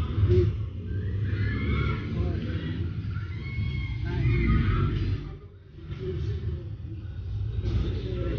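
Gym room noise: indistinct voices of other people talking over a steady low rumble, with a brief lull about five and a half seconds in.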